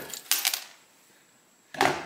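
A few small metallic clicks and a light clatter about half a second in as the Singer 66's cast-iron head is turned over, with the tension release pin dropping out of the casting.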